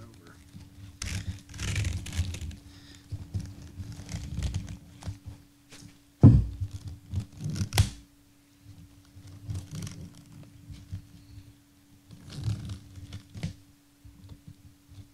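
Fabric filter wrap rustling and stretching as hands work its elastic edge down over a round pleated air filter, in irregular scuffs. A sharp thump about six seconds in and another about two seconds later, with a faint steady hum underneath.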